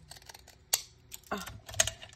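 Scissors snipping paper and paper being handled: one sharp snip about a third of the way in, then two louder bursts of clicking and rustling near the end.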